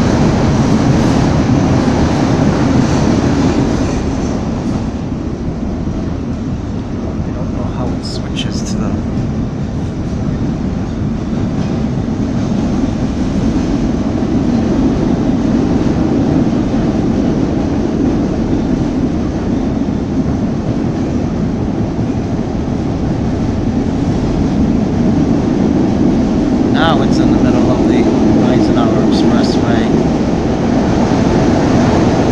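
Inside a CTA Blue Line 2600-series rapid-transit car running at speed: a steady rumble of wheels on rail and traction motors. It eases a little a few seconds in and builds again. Brief higher-pitched sounds come through around eight seconds in and again near the end.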